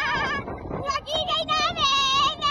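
Women screaming and laughing on a swinging amusement-park ride: long, high, wavering screams, broken by a few short gaps around the middle.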